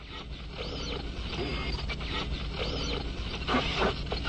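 Sci-fi communication-screen sound effect of an incoming video transmission showing static: a hiss of interference with a warbling electronic tone that rises and falls twice, about two seconds apart, and a few loud crackles near the end.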